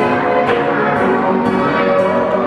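Carousel band organ music: bell-like tones and brass-like pipes playing a tune over a steady beat of about two strokes a second.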